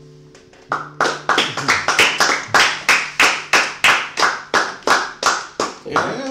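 The last acoustic guitar chord fades out, then less than a second in hand clapping starts: sharp, evenly spaced claps, about three a second, applause at the end of the song.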